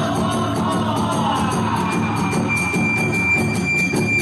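Kagura festival music: fast, even clashing of small hand cymbals over a steady drum beat, with a bamboo flute whose line glides downward and then holds a long high note from about halfway.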